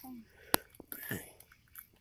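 Hand pruning shears snipping through a gar's hard, armoured scales and skin: one sharp snip about half a second in, then a few fainter crunching clicks.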